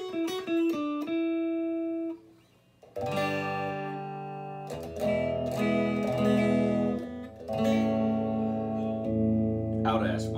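Fender Vintera '60s Telecaster Modified electric guitar played with its S-1 switch engaged, which puts the pickups out of phase. It opens with a short run of single picked notes, goes quiet briefly about two seconds in, then plays held strummed chords that change every couple of seconds.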